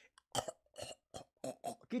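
A man making a quick run of short, throaty vocal noises, about eight clipped bursts, rather than words.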